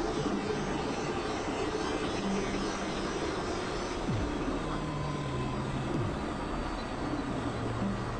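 Experimental synthesizer noise-drone music: a dense, steady wash of noise with low held tones that step between pitches, and a quick downward pitch glide about four seconds in.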